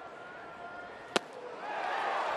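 Ballpark crowd murmur with a single sharp pop about a second in: the pitch smacking into the catcher's mitt on a swinging third strike.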